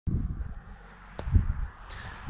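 Low, uneven rumble of wind on the microphone of a hand-held camera outdoors, with a sharp click about a second in and a low thump just after.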